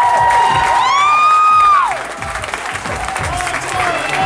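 Guitar amp feedback held as steady high tones, then gliding down and cutting off about two seconds in, leaving crowd noise and cheering as a live hardcore set ends.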